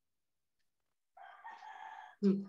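A faint animal call starts about halfway in and is held on a steady pitch for about a second.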